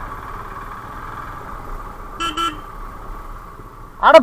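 Motorcycle running along a dirt track with steady engine and wind noise, and two short horn toots a little over two seconds in.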